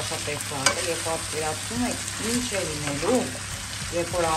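Potatoes, meat and onions sizzling as they fry in a nonstick pan while they are stirred and turned over, with a single sharp click a little over half a second in.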